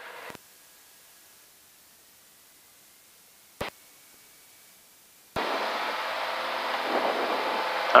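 Very quiet cabin, then about five seconds in the Columbia 350's running engine cuts in suddenly and steadily through the headset intercom, a dense drone with a steady hum in it. There is a single sharp click in the quiet part before it.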